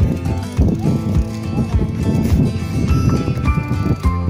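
Background music with a steady percussive beat under sustained melodic tones.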